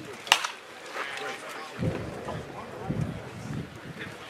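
A pitched baseball popping once into the catcher's leather mitt, a single sharp crack about a third of a second in. Indistinct voices and chatter from around the field follow.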